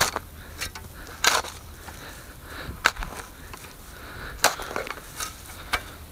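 A steel spade cutting into turf and rooty soil, making about seven short, irregular crunching cuts and scrapes.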